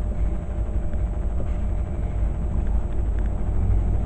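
Steady low rumble with a faint hiss above it, without speech.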